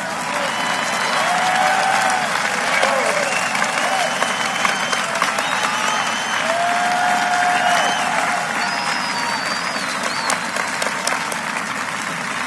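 Large audience applauding steadily, with a few voices calling out above the clapping.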